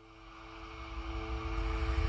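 Logo-intro sound effect: a whooshing riser with a low rumble under a held two-note drone, swelling steadily louder.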